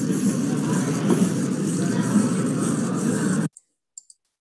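Steady rushing noise with a low rumble, the background sound of a played robot demonstration recording; it cuts off suddenly about three and a half seconds in.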